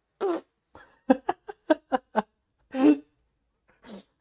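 A man laughing in short bursts, with a quick run of about five laughs a second in the middle.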